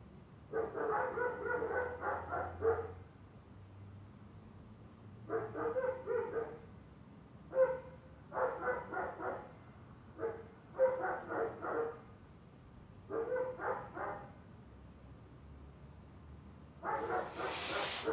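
A dog barking off and on in about six short bouts, each a quick run of barks, with a louder, wider noise joining in near the end.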